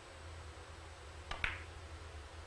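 Two sharp clicks close together about a second and a half in: a cue tip striking the cue ball, then the cue ball hitting the first object ball on a three-cushion carom billiards shot. A faint low hall hum lies under them.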